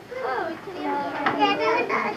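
Young children's voices chattering and calling out over one another, high-pitched and indistinct.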